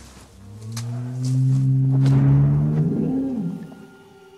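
An unseen dinosaur's roar, made as a film sound effect: one long, low call that swells for about two seconds, then drops in pitch and fades.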